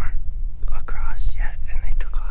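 A man whispering, over a steady low rumble.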